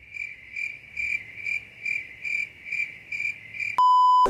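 Cricket-chirping sound effect, an even chirp about twice a second, the comic sign of an awkward silence while someone is stuck for a word. Near the end the chirps cut off and a steady test-card beep starts.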